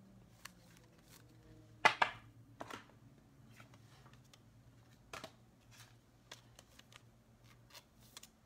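Trading cards and hard plastic card holders being handled on a table: a few short clicks and rustles, the loudest about two seconds in, with smaller ones scattered after, over a faint low hum.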